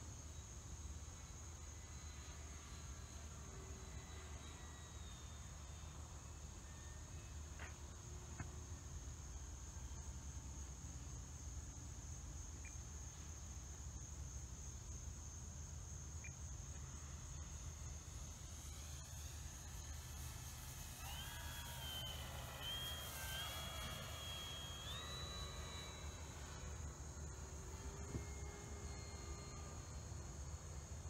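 Steady high-pitched insect trilling over a low rumble of wind on the microphone. About two-thirds of the way in, the E-flite Draco's electric motor whine comes up overhead, rising and stepping in pitch as the throttle changes, then fades.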